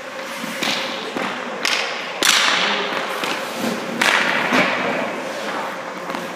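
Hockey goalie's skate blades scraping the ice in about four sharp bursts of hiss as he pushes across the crease and drops to his pads, with dull thuds among them. The loudest scrape, a little over two seconds in, starts with a knock.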